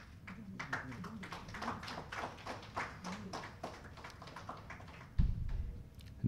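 Sparse applause from a small audience: a few hands clapping irregularly, thinning out after about four seconds. A short low thump comes near the end.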